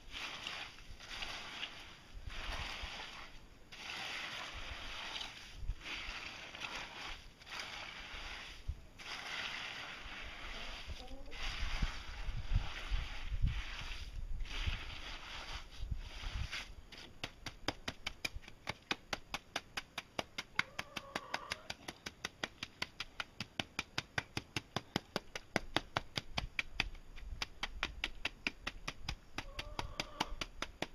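Steel hand trowel working wet concrete on the ground: rasping scraping strokes about once a second for the first half. After that come fast, even taps about three a second as the trowel pats the surface.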